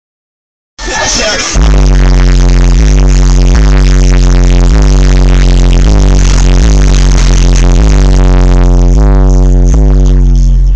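Bass-heavy music played very loud through a car audio system of four 12-inch 750-watt RMS subwoofers wired to 1 ohm, heard inside the cabin. It starts about a second in, and a deep steady bass sits under a line of stepping notes, with the level pinned near full scale.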